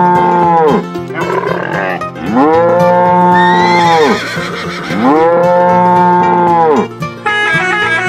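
Cow mooing: the end of one long moo, then two more full moos of about two seconds each, every call rising and falling in pitch, over background music. After the last moo, about seven seconds in, a plucked-string tune carries on alone.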